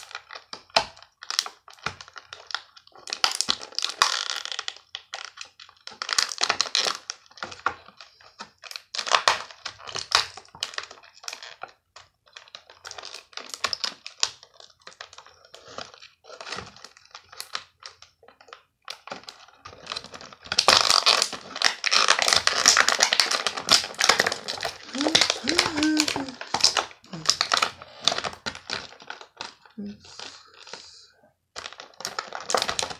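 Clear plastic blister packaging and a small plastic bag being handled and pulled apart, crinkling and crackling in irregular bursts, densest and loudest for several seconds about two-thirds of the way through.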